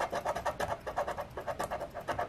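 A large coin-shaped scratcher rubbed quickly back and forth over the coating of a paper scratch-off lottery ticket, a fast, even run of short scraping strokes, scratching off the prize amount under a matched number.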